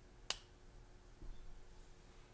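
A single sharp click about a third of a second in, then a faint low knock, over quiet room tone with a low hum.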